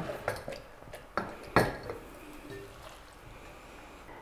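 A few light knocks and clinks of a wooden pickle packer against a glass Kilner jar as chopped salsa is pressed down, the loudest about a second and a half in, with quiet room noise between.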